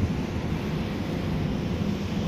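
Strong wind buffeting the microphone over rough sea, a steady low rumble with waves washing against a ship's hull.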